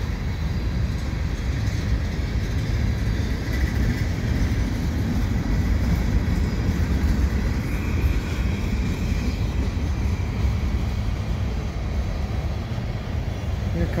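Freight cars of a mixed freight train rolling past at close range: a steady rumble of steel wheels on rail. A faint high whine runs through the middle.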